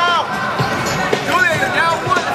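Busy tournament hall: overlapping raised voices of coaches and spectators calling out over a steady crowd din, with a few low thumps.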